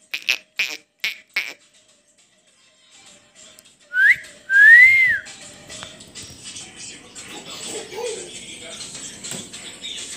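A quick run of short high squeaks, about four a second, that stops after about a second and a half. Then, about four seconds in, a person whistles two short notes, the second rising and falling; these are the loudest sounds.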